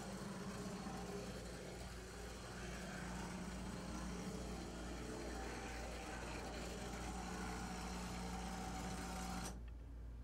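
Electric motor and gearing of a brass HO-scale short Brill trolley model running along the track, a steady hum with wheel noise that cuts off sharply near the end.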